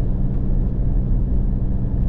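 A car's engine and road noise heard from inside the cabin while it drives at a steady speed on a sealed road: a steady low hum that holds its pitch.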